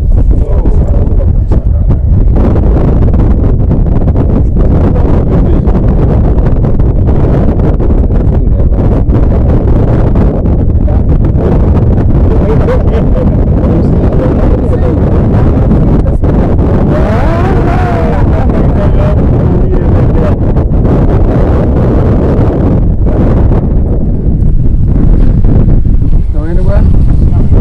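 Strong wind buffeting the microphone in a loud, steady rumble, with voices faintly under it and one voice rising briefly about two-thirds of the way in.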